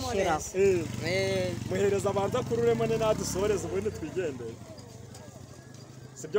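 People's voices talking animatedly in a lively, sing-song way for about four seconds, over a low steady hum. The voices then drop off and it is quieter near the end.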